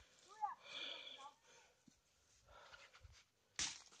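Near silence, with a faint, brief voice about half a second in and a short noisy sound just before the end.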